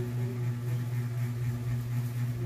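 A steady low hum with fainter higher overtones, like the running of a motor or electrical appliance.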